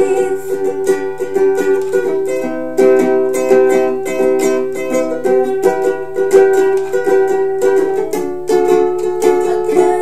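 Ukulele strummed chords in a steady, even rhythm.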